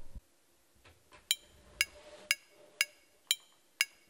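Notation software's metronome counting in for a recording take: sharp clicks, two a second (120 beats per minute), six of them starting about a second in.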